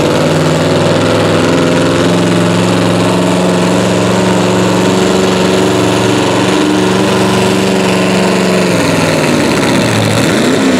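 V-8 engine of a classic pulling tractor running hard under load as the tractor drags a weight-transfer sled. The engine note holds steady for most of the pull, then changes pitch and breaks up near the end.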